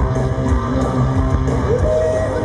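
Heavy metal band playing live, with distorted electric guitars, bass and drums, as heard from the crowd.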